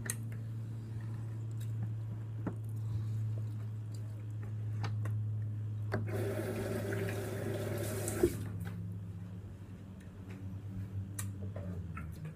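Kitchen sounds: a steady low hum under a few light knocks and clicks, and about six seconds in a rush like a tap running for about two seconds, ending sharply.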